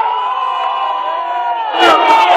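Several voices shouting one long, held yell, with the pitch dropping near the end.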